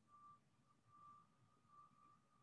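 Near silence, with only a faint, thin high tone that comes and goes.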